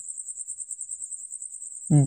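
A thin, high-pitched trill pulsing rapidly and steadily, like a cricket's.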